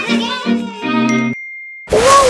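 Short intro jingle: a voice sings or chants with bouncing pitch, and a bright single ding chimes near the end of it and rings on briefly after the voice stops.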